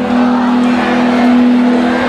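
Live rock band music, loud, with one long note held steadily over the band.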